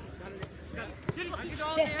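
A soccer ball kicked twice, two short thuds a little over half a second apart, under players' distant shouts.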